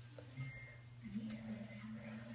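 Faint strokes of a hairbrush being pulled through long hair, a few soft brushing sounds over a low steady hum.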